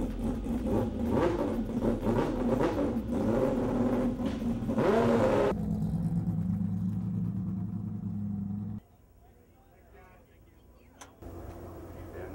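Race car engines running, with the pitch rising and falling in the first few seconds, then a steady idle. The sound cuts off suddenly about nine seconds in, and a low steady hum returns near the end.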